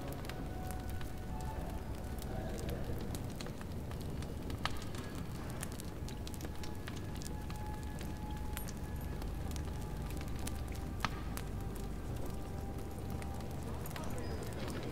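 Fireplace fire crackling, with scattered sharp pops (a clear one about halfway through and another near the end), over a steady low rumble of room ambience.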